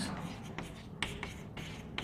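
Chalk writing on a chalkboard: short scratching strokes and light taps as words are written, with a sharper tap about a second in.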